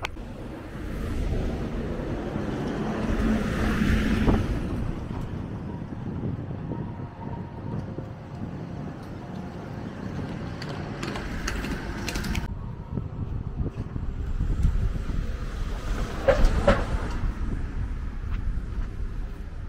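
City street traffic: motor vehicles passing close by, one swelling to a peak about four seconds in and another near the end.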